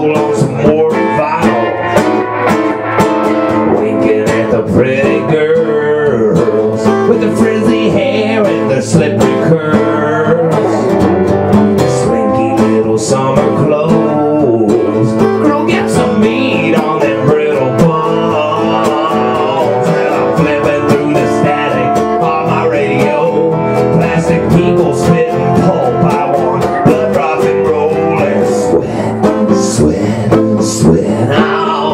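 Live country-blues instrumental break: an acoustic guitar strummed steadily while an electric guitar plays a lead line over it with bending notes.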